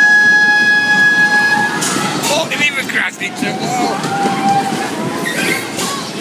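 A single steady signal tone, held for about two seconds at the start, followed by people talking over a noisy crowd background.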